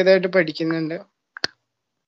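A man speaking for about the first second, then a single click about 1.4 s in. The sound drops to dead silence between the two.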